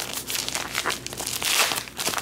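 Crinkly silver foil pouch handled and pulled open by hand: irregular crackling and rustling throughout.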